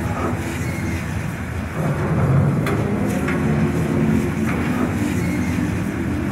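Steady low rumble of heavy machinery with a few sharp metallic clanks, from steel being cut up for scrap.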